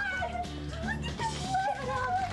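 Background music with women's high-pitched excited squeals and exclamations rising and falling over it.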